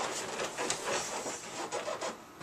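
Soft rustling and scraping handling noise, a jumble of small irregular clicks and shuffles with no steady tone, dipping near the end.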